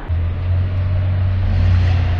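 Steady low rumble of a motor vehicle running close by, starting abruptly just after the start.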